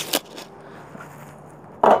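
A single short knock just after the start, then faint steady background noise.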